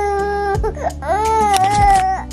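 Young baby crying in two long wails of about a second each, with a short break in between.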